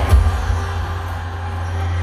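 Live banda music through an arena sound system in a gap between sung lines: a low bass note held steadily under a faint haze of crowd noise.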